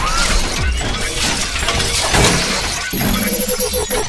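Cinematic intro sound effects: a dense, loud mix of shattering, crashing hits and whooshes, with a sharp hit about three seconds in.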